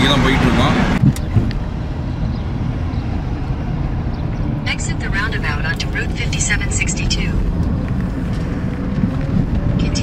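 Steady low rumble of road and engine noise inside a moving car's cabin. A man's voice is heard for about the first second, and faint higher sounds come and go in the middle.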